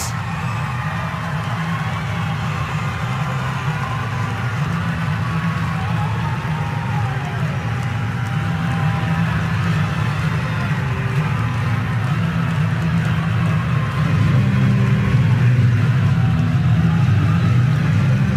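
Stadium ambience: a steady low rumble of background noise that grows somewhat louder near the end.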